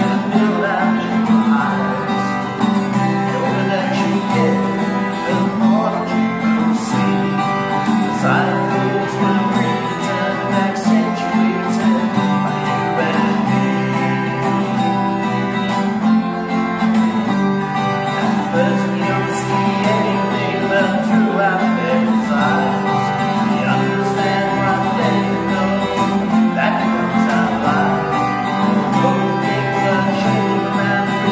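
A Maton steel-string acoustic guitar played live, chords ringing steadily throughout.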